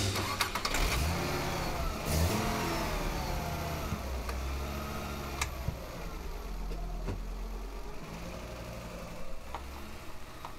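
A vehicle engine running with its pitch slowly rising and falling, fading gradually, with a couple of faint clicks midway.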